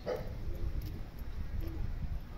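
A dog barking once at the very start, with fainter short yelps later, over a steady low rumble.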